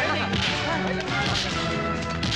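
Film fight sound effects: a few sharp swishing punch hits, about a second apart, over background music with held tones.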